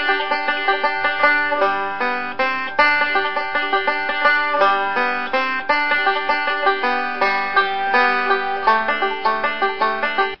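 Five-string banjo played in bluegrass three-finger style: a fast, continuous stream of picked rolls carrying a melody over the chords.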